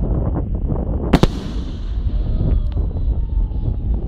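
Aerial fireworks bursting: a continuous low rumble and crackle of shells, with one sharp, loud bang about a second in and smaller cracks later, over faint falling whistles.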